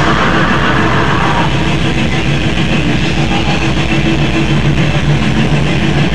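Black metal band playing live: distorted electric guitars over a very fast, even pulse of drums.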